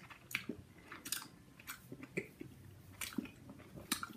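Close-up chewing of a mouthful of milk chocolate with a soft liquid-caramel filling: quiet, irregular wet mouth clicks and smacks.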